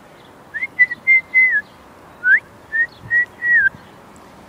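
A person whistling to call a dog: two short four-note whistled phrases, each opening with a quick rising note and ending on a falling one. The first comes about half a second in and the second about two seconds in.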